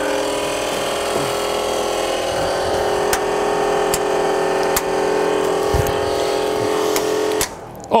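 Car's electric blower fan motor running with a steady hum, with a few clicks along the way, until it cuts off abruptly near the end when its switch is found. It came on by itself when the battery was connected and would not turn off.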